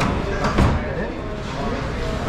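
Voices in the room and a single sharp thump about half a second in.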